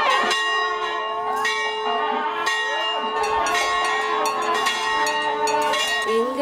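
Temple bell rung over and over, each strike ringing on so that its tones hang steadily throughout, with voices underneath.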